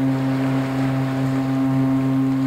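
A ship's horn sounding one long, steady, deep blast.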